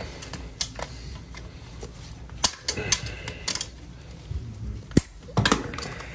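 Channel-lock pliers clicking and snapping against plastic toilet bolt caps as they are pried off the toilet base: a series of sharp, irregular clicks, the loudest about five seconds in.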